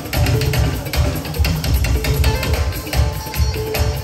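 Live band music playing a steady beat on drums and percussion over heavy bass.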